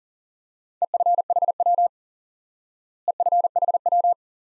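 Computer-generated Morse code beeps at one steady pitch, sending EFHW (end-fed half-wave) at 40 words per minute. The group is sent twice, about a second in and again near the end.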